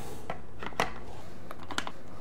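Light, scattered clicks of dry, uncooked manicotti shells knocking against each other and the slow cooker's crock as they are set in place.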